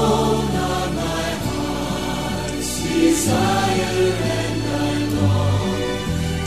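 Christian worship music with a choir singing over sustained chords, the bass note changing about every two seconds.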